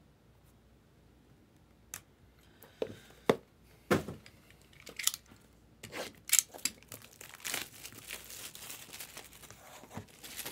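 A few sharp taps and clicks of handling, then a utility knife slicing the plastic shrink wrap on a sealed trading-card box, and the wrap crinkling and tearing as it is pulled, from about six seconds in.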